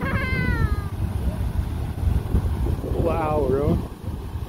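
Beehive Geyser erupting: a steady low rushing noise from its water column. A high, falling squeal of a voice comes at the very start, and a wavering shout of 'Ah!' comes near the end.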